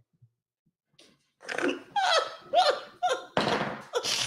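A woman laughing into a close microphone: after a short quiet start, a run of short laughs begins about a second and a half in, ending in a long breathy gasp near the end.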